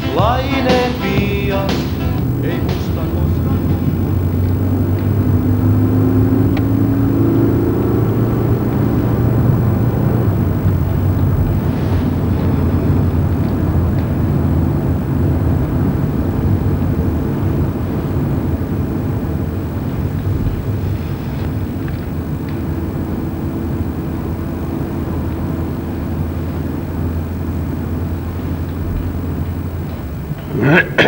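Music in the first several seconds, giving way to the steady low rumble of a moving vehicle heard from inside it.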